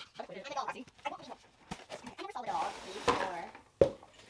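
Cardboard box being opened by hand: flaps rustling and scraping as they are pulled apart, with a few sharp knocks, the loudest near the end.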